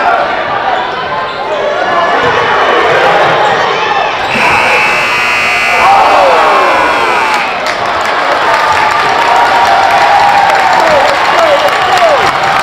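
A basketball dribbled on a hardwood gym floor over crowd shouting and cheering in a large hall. A steady high-pitched tone lasts about three seconds, starting about four seconds in.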